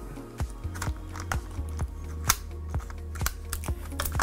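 Background music with a steady low tone, over a scatter of small sharp clicks from a plastic 8mm video cassette being handled.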